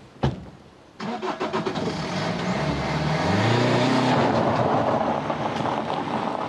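A car door shuts with a single thump. About a second later a BMW saloon's engine starts and the car pulls away over gravel, the engine revving up as it accelerates and the tyres crunching on the stones, then slowly fading as it drives off.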